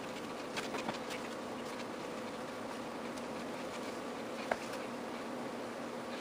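Small wooden squares being set by hand onto a board, a few light clicks of wood on wood, one sharper click about two-thirds of the way through, over a steady low hum.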